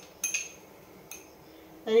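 Metal spoon clinking lightly against a small glass bowl while spooning powder out of it: two quick clinks, then another about a second in.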